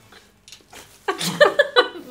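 A person's voice breaking into a loud, wordless reaction about a second in, after a quiet first second: a reaction to the taste of a Bean Boozled jelly bean.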